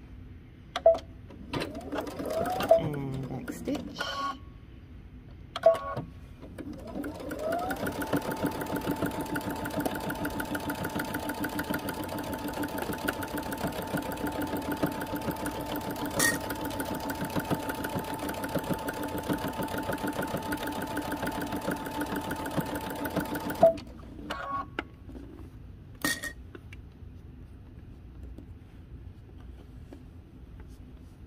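Electric sewing machine stitching a seam through layered sweatshirt fleece. It makes a short run of a couple of seconds, then after a pause speeds up and runs steadily for about seventeen seconds with a rapid needle rhythm and a steady whine, stopping suddenly. Sharp clicks come around the starts and stops.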